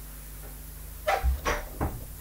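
Handling knocks: in the second half a dull thump and a few short light knocks, as the hand-held coil and the small flywheel rig are moved about, over a faint steady low hum.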